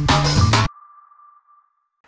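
Channel intro jingle: music with a beat that stops abruptly less than a second in, leaving one high note ringing on and fading out.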